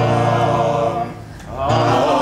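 Several voices singing a held note together in a vocal warm-up. The note fades out about a second in, and the singing starts again near the end.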